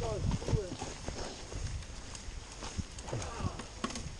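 Mountain bike rattling and knocking over a bumpy, leaf-covered forest trail at speed, an irregular run of clatter over tyre noise. A short voice sound comes in right at the start and again briefly past three seconds.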